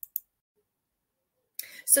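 Two brief, faint mouth clicks just after a woman finishes speaking, then dead silence, then a faint breath and the spoken word "so" near the end.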